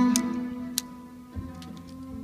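Solo cello: a held note fades away, a single sharp click sounds just under a second in, and a softer low note comes in about halfway through.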